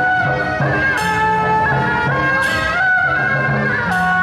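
Loud procession music: a piercing wind-instrument melody with sliding, ornamented notes over a steady low pulse, with cymbal crashes about a second in and again past the middle.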